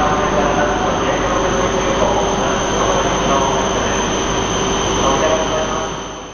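Loud, steady noise of Shinkansen trains at a station platform, with indistinct voices in the mix.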